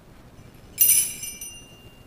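Altar bell rung once at the elevation of the chalice during the consecration of the wine: a sudden, loud, bright ring of several high tones that dies away within about a second, one tone lingering faintly.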